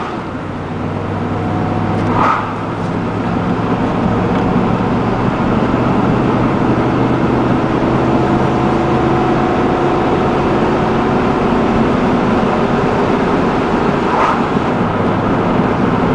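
Dodge Dakota pickup's engine running on wood gas, heard from inside the cab as the truck accelerates from a stop. The engine and road noise build over the first few seconds, then hold steady at cruising speed.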